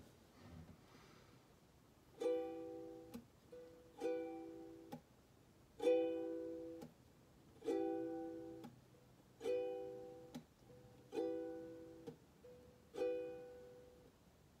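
Ukulele strummed, one chord about every second and three-quarters from about two seconds in, seven strums, each left to ring and fade: the opening chords of a song, with no singing yet.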